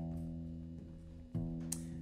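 Acoustic guitar strings plucked and left ringing while being tuned at the pegs: a note rings and fades at the start, and is plucked again about one and a half seconds in.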